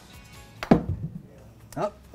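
A putter striking a mini-golf ball: one sharp click about two-thirds of a second in, over faint background music. A short voice sound comes near the end.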